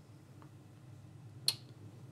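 Quiet room tone broken by a single short, sharp click about one and a half seconds in.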